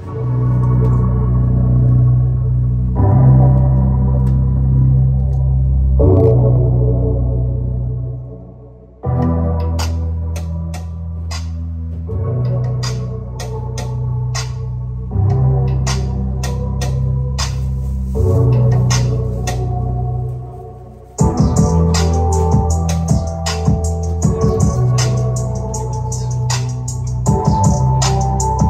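Bass-heavy music played loud through a 2023 Harley-Davidson CVO Road Glide's audio system, fitted with Harley's Stage 3 6x9 rear speakers, during a test listen. Deep sustained bass notes change every few seconds. A clicking drum beat comes in about nine seconds in, and the music turns fuller and brighter about twenty seconds in.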